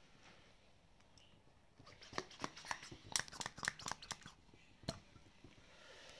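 A quick, irregular run of plastic clicks and crackles, starting about two seconds in and lasting about three seconds, as plastic cupping gear (suction cups and the hand vacuum pump) is handled.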